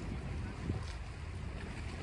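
Wind buffeting the microphone outdoors: a steady low rumble with a faint hiss above it.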